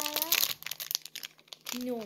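Thin plastic wrapper crinkling as it is handled and pulled open, busiest in the first second and then dying away to a few small crackles.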